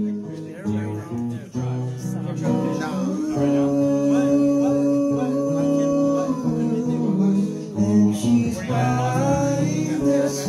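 A man singing live to his own acoustic guitar, with long held, slightly wavering sung notes over the strummed chords.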